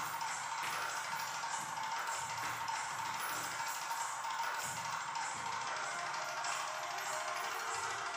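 Recorded music accompanying a semi-classical Indian dance, playing steadily with a regular beat.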